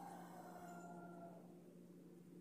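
Near silence: room tone with a steady low hum, and a faint tone that slides slightly downward over the first second and a half before fading.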